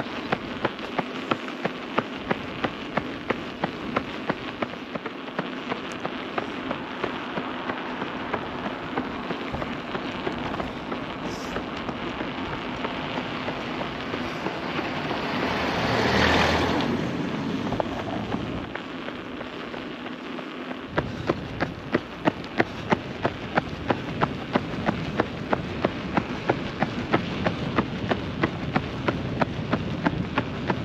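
A runner's footsteps slapping on an asphalt road at marathon pace, about three strikes a second, over a steady rushing noise. About halfway through a louder rush swells up and dies away, and the footsteps drop out for a few seconds before returning.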